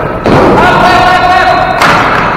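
Ball hockey play in an echoing gym. A thump comes about a quarter second in and a sharp crack of stick or ball just before the end. Between them a voice calls out in one long held note.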